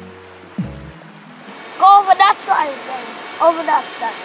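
Background music fades out in the first second. After it comes steady outdoor hiss, and a child's high voice calls out twice, once about two seconds in and again near the end, without clear words.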